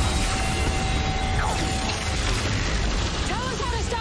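Electrical storm and lightning-machine sound effects: a dense crackle over a low rumble, with a steady tone for about the first two seconds. A voice calls out near the end.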